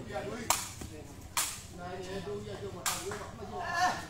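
Sepak takraw ball being kicked during a rally: three sharp, clean smacks, the second about a second after the first and the third about a second and a half later.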